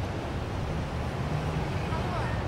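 Steady city street noise: a low, even rumble of traffic.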